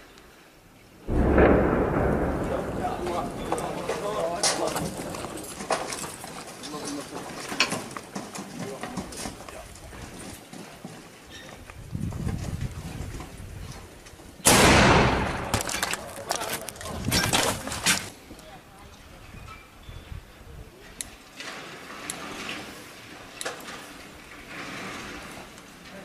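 Mortar firing: a sharp, loud blast about halfway through that dies away over a few seconds. Another loud sudden sound about a second in also fades slowly.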